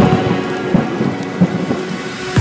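Thunder-and-rain sound effect in the edit's music track: a noisy hiss with a few irregular low rumbles.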